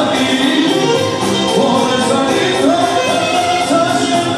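Live Albanian folk dance music: a man singing into a microphone, with clarinet and band accompaniment over a steady beat.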